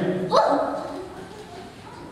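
A single short, rising vocal yelp about half a second in, ringing in a large hall, then a low steady room hum.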